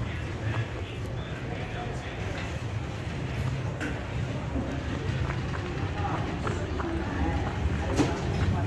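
Brisk footsteps of people walking across a hard floor, over a steady low rumble, with voices in the background.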